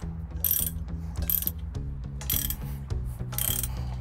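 Socket ratchet clicking in short bursts, about one a second, as the bolts of a new marine exhaust elbow are run down.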